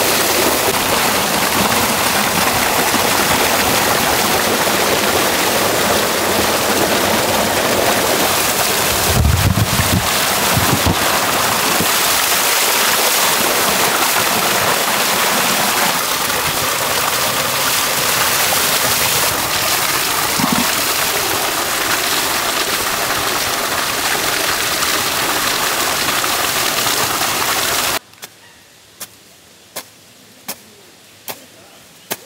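Water gushing from a spout and splashing into a large brass vessel as greens are washed in it by hand, then over the vessel itself as it is rinsed, with a few low thumps about a third of the way in. Near the end the water sound cuts off to quiet, and three sharp chops of a hoe striking soil follow.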